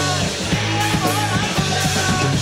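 A punk rock band playing live, with electric guitar, bass and a drum kit pounding out a fast, steady beat.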